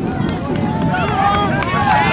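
Several voices of players, coaches and spectators talking and calling out at once, overlapping into sideline chatter with no single clear speaker.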